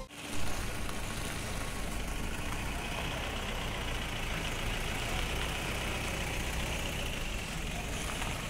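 Steady low rumble and hiss of background noise, with a short thump about half a second in.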